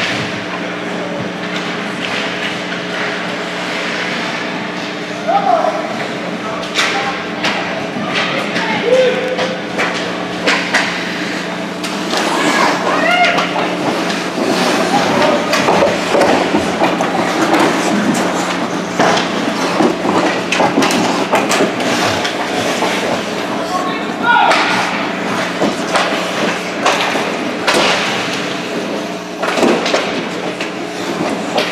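Live ice hockey rink sound: sharp knocks of sticks, puck and bodies against the boards, mixed with shouts from players and spectators over a steady background hum.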